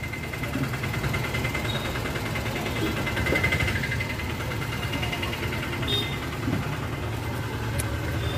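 Car engine idling, heard from inside the cabin: a steady low rumble with a faint, even ticking over it.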